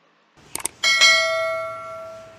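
Subscribe-button sound effect: two quick mouse clicks, then a bright bell ding that rings out and fades over about a second and a half.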